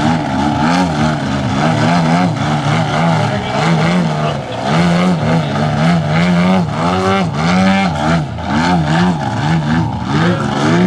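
RC Extra 330SC aerobatic plane's engine and propeller, the throttle worked up and down so the pitch rises and falls over and over, about once or twice a second, as the plane holds a nose-up hover just above the ground.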